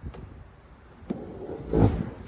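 Knocks and clatter of lawn equipment being moved about on a landscaping trailer, with one loud thump near the end.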